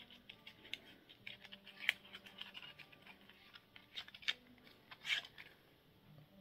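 Mascara packaging being opened by hand: a run of small, irregular crinkling and crackling clicks, with a few louder snaps about two, four and five seconds in.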